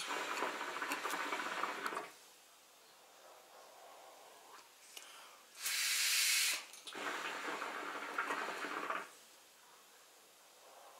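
Hookah water bubbling as a drag is pulled through the hose, twice: for about two seconds at the start and again for about two seconds near the end. A short loud hiss of blown breath comes between the two drags.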